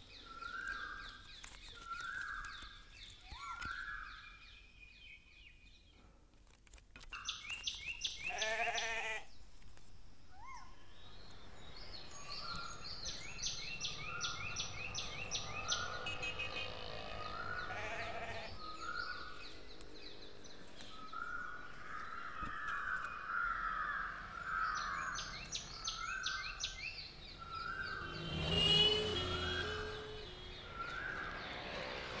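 Outdoor bird calls: one bird repeats a short note about once a second while others chatter in quick runs. A loud animal call with a wavering pitch cuts in about eight seconds in, and another loud call comes near the end.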